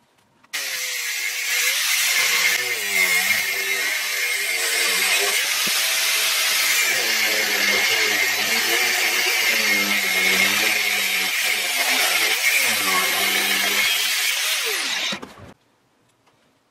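Angle grinder cutting through a steel hex shaft, a bright grinding hiss over the motor, whose pitch dips and recovers as it bites under load. It starts abruptly about half a second in and winds down with a falling pitch near the end.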